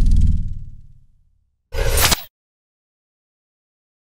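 Logo sting sound effect: a deep boom fading out over about a second, then a second short burst about two seconds in, lasting about half a second.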